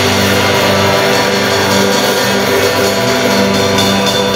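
Live worship band playing, heard from beside the drum kit: drums and ringing cymbals over electric and acoustic guitars holding sustained chords.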